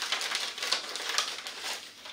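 Sterile medical packaging being torn open and handled by hand: a rapid, irregular crackling rustle.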